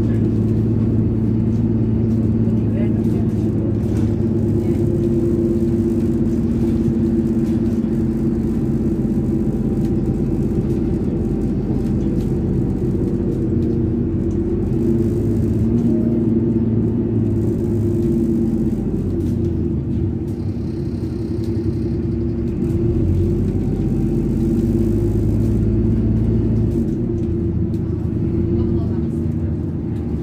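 Alexander Dennis Enviro 400 double-decker bus on a Dennis Trident chassis, its diesel engine and driveline running steadily as it drives, heard from inside the lower-deck saloon. The engine note drops about twenty seconds in, picks up again a few seconds later and eases off near the end.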